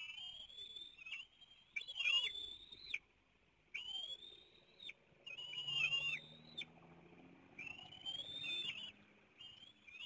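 Bald eagles at the nest calling: a series of about six high, thin whistled squeals, each about a second long, that rise, hold and then drop away at the end.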